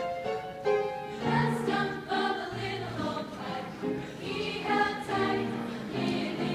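A choir singing a song with piano accompaniment.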